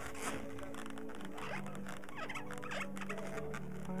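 Latex modelling balloons squeaking and rubbing as they are handled and adjusted, with a few short squeaks in the middle, over quiet background music.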